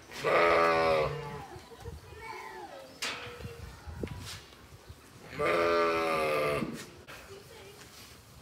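Sheep bleating: two loud, steady calls, each about a second long, one at the start and one about five and a half seconds in, with fainter sounds between them.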